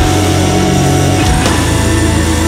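Folk metal music: guitars and bass holding long sustained chords, with no singing.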